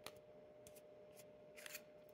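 Near silence with a few faint, light clicks of a fountain pen being handled.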